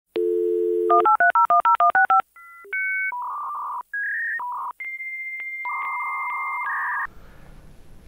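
Dial-up modem connecting: a steady telephone dial tone, a quick run of touch-tone digits, then the modem's handshake whistles and tones, including a long steady tone broken by regular clicks. The tones stop about seven seconds in, leaving faint room noise.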